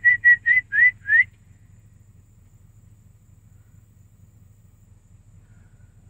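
A person whistling a quick run of about seven short notes, each sliding up to the same pitch, over the first second or so. After that only a faint low hum remains.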